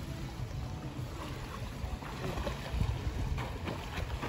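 Wind rumbling on the phone microphone, with faint splashing from a swimmer in an outdoor pool.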